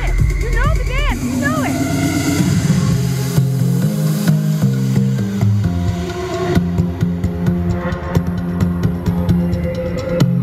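Dance music from a DJ played through a stage sound system: a steady beat over a stepping bass line, with quick rising sweeps in the first second or so. The high end drops away about two-thirds of the way through.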